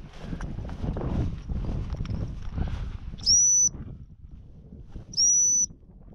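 Two short blasts on a dog training whistle, each a single high, steady note lasting about half a second, about two seconds apart. Before them, footsteps swish through dry grass.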